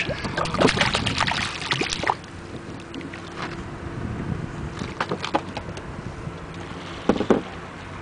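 Hooked jack crevalle splashing and thrashing at the water's surface beside the boat for about two seconds, then quieter, with a steady low hum underneath and a few sharp splashes near the end as the fish is grabbed and lifted by hand.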